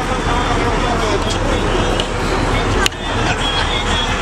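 A boat's engine running steadily under way, with the rush of wind and water over it and indistinct voices early on. A sharp click and a brief drop about three seconds in.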